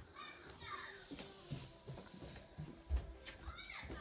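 Footsteps thudding down a flight of stairs, with one heavier thud about three seconds in. Faint high-pitched voices run in the background.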